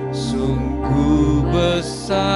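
Slow worship music: an electronic keyboard holding sustained chords, with a soft sung melody over it.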